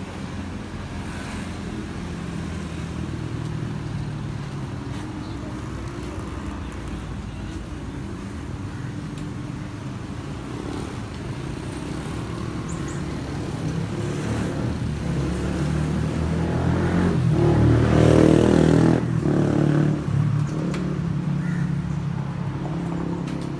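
Street traffic: motorcycle and car engines running steadily, growing louder and peaking as a vehicle passes close about three-quarters of the way through, then easing off.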